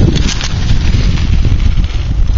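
Wind buffeting the camera microphone: a loud, steady rumbling noise.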